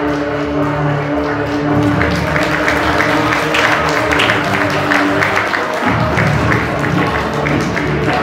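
A song playing as performance music, with a long held note that stops about six seconds in.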